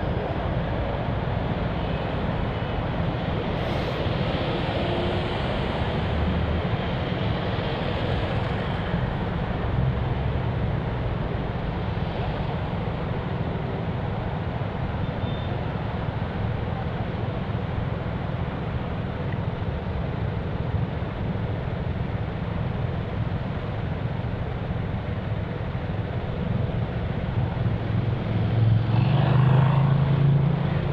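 City road traffic crossing an intersection: a steady low rumble of engines and tyres, with a louder vehicle passing close shortly before the end.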